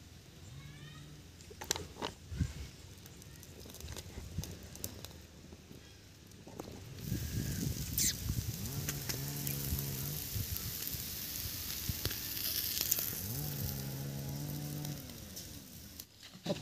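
Masala-coated sardines sizzling on a wire grill over a wood fire, a fine crackling hiss with a few sharp pops. A farm animal lows in the background in drawn-out calls of about a second and a half, twice in the second half, with a shorter call near the start.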